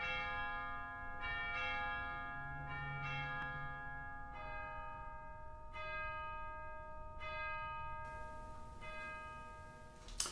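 Church bells ringing a slow sequence of single strokes on different notes, a new stroke about every second and a half, each note ringing on and fading into the next.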